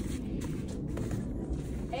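Faint footsteps in fresh snow, a few soft steps over a steady low rumble.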